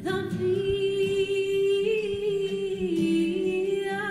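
A woman singing, holding one long note that steps down briefly near the end.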